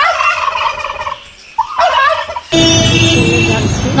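Domestic turkeys gobbling: two loud, wavering calls, the second shorter. About two and a half seconds in, the sound cuts abruptly to louder street-traffic noise with a held tone.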